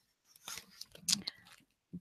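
Faint crackling and scraping of a cardboard shipping box and its tape being handled, in a few short bursts about half a second and a second in.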